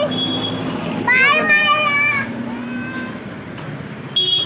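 A young child's high-pitched voice calling out once, a drawn-out shout about a second in, like the "Bye!" calls either side, with street noise underneath.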